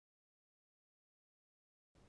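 Near silence: the sound track drops to nothing.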